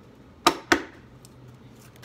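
Two sharp slaps as a deck of oracle cards is handled, about half a second in and a quarter second apart, followed by a few faint card ticks.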